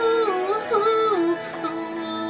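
A male singer's wordless vocal run into a microphone, the pitch sliding up and down for about a second and a half, over a slow pop ballad backing track whose held chords carry on after the voice stops.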